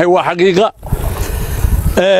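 A man talking briefly, then, a little before halfway, a loud low rumbling noise that cuts off abruptly at the end.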